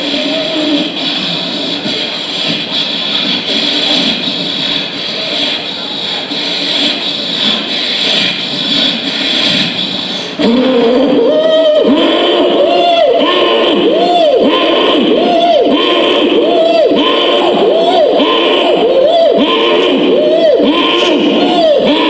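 A man's loud rhythmic vocalised breaths through a hand-held microphone during a breathing exercise. The sound starts suddenly about halfway in and repeats a little more than once a second, each breath rising and falling in pitch. Before that there is a hall murmur.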